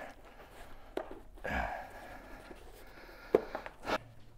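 Handling noise from a mountain bike tyre and CushCore foam insert being worked onto the rim by hand: rubbing and shifting of the rubber with a few sharp clicks, the loudest a little past three seconds in.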